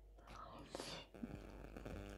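Faint mouth sounds of a woman eating buckwheat: soft chewing and breathing, with a low murmur of voice in the second half.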